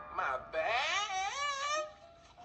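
A high, wailing cartoon voice from the parody's soundtrack. It starts with a short rising glide, then is held and wavers up and down in pitch for over a second before breaking off.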